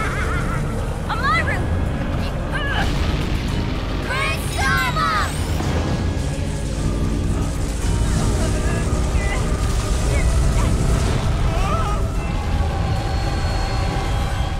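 Cartoon magic-blast sound effect: a loud, steady low rumble of a swirling energy vortex throughout, with short, high, strained cries in the first few seconds and dramatic music over it.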